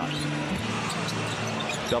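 Live NBA game sound from the arena floor during play: a steady crowd and arena hum with short, high squeaks of sneakers on the hardwood court.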